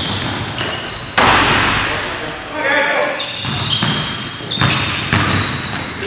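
Basketball being dribbled on a gym's hardwood floor during play, with several sharp knocks and players' voices calling out.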